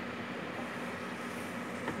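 A steady low hum with an even hiss, unchanging throughout.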